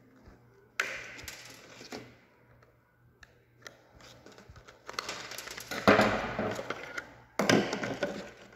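Plastic fuel pump canister being pried apart with a screwdriver: scraping and clicking of plastic, with louder sudden scrapes and snaps in the second half as the halves come apart.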